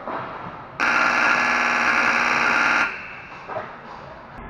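Ice rink scoreboard horn sounding one buzzing blast of about two seconds, starting near a second in and cutting off sharply: the signal for the end of a period, here the second.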